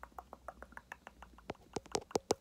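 Fingertips and a gem sticker tapping and pressing on the camera lens: a quick run of small sharp clicks, several a second, which grow louder about a second and a half in.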